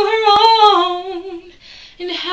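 A woman singing unaccompanied, holding one slightly wavering note that fades out about one and a half seconds in. A faint breath follows near the end.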